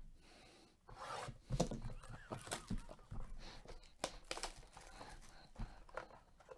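A trading-card blaster box handled and opened by hand: irregular crinkling, scraping and tearing of its plastic wrap and cardboard, with a few short sharp crackles, starting about a second in.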